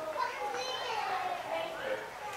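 Indistinct high-pitched chatter of children's voices, with no clear words.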